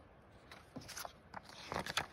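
Faint rustling and crackling of paper rule sheets being handled and turned over, in a few short, scattered crackles.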